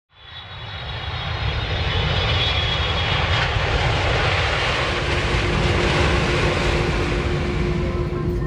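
Jet airliner engines, a dense rushing noise that swells up over the first two seconds and then holds steady, with a high turbine whine over the first few seconds.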